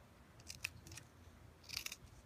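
Scissors snipping through a strip of thin faux leather, cutting fringe slits: soft, short snips, a couple about half a second in and a few more near the end.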